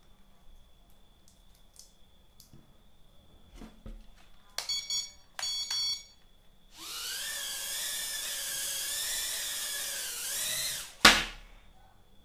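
Eachine E012 micro quadcopter's four small coreless motors and propellers whining steadily at a high pitch for about four seconds of flight, preceded by two short buzzy tones. The whine ends in one sharp knock as the drone comes down.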